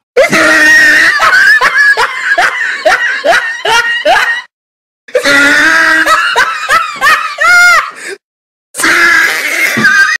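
Loud, hearty laughter in three bouts, broken by short pauses about four and a half and eight seconds in.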